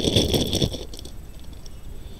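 Plastic bag crinkling and glass millefiori beads clicking as a beaded necklace is pulled out of its bag, busiest in the first second, then quieter handling.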